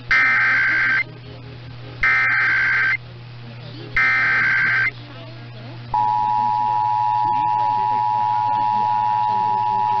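Emergency Alert System header heard over AM radio: three one-second bursts of SAME data tones, two seconds apart, over a steady low hum. About six seconds in, the steady two-tone EAS attention signal starts, marking the start of a Required Monthly Test.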